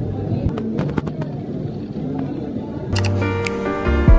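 Indistinct chatter of a crowd of shoppers with a few sharp clicks. About three seconds in, background music with sustained notes comes in.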